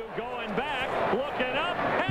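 A man talking, with no distinct non-speech sound.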